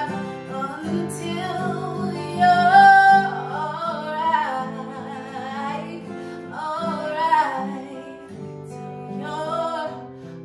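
A woman singing over acoustic guitar accompaniment, her sung notes bending and sliding over held guitar chords. Her loudest, highest phrase comes about two and a half seconds in.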